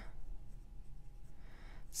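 Pilot Custom 823 fountain pen's medium gold nib writing on paper: a faint, soft sound of the nib gliding through the strokes of a word.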